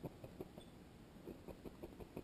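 A felting needle jabbing repeatedly into wool, a quick, faint run of soft punches with a short pause midway.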